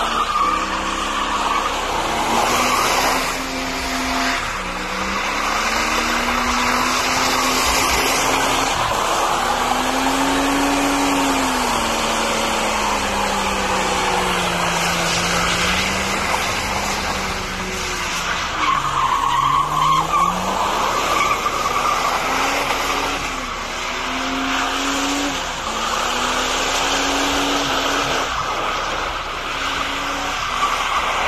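Ford Falcon sedan doing a burnout: the engine is held at high revs that swing up and down while the spinning rear tyres squeal and skid. About two-thirds through, the revs drop sharply and climb again as the tyre squeal comes up loudest.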